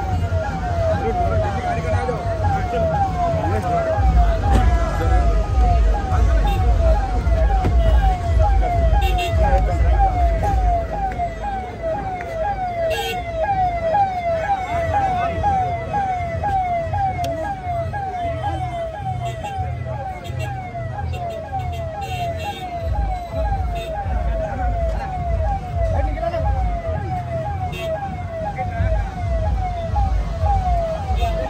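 Vehicle siren sounding a fast repeating yelp, each cycle falling in pitch, about two a second and unbroken throughout, over crowd chatter and a low rumble.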